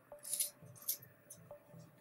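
Dressmaking shears cutting through thin dress fabric along a seam: a few short, crisp snips, the loudest about half a second in.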